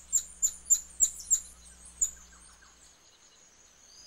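Golden lion tamarin giving its territorial warning call: a rapid run of sharp, very high chirps, about four a second, stopping about a second and a half in, with one last chirp at two seconds. A faint steady high-pitched tone carries on after the calls.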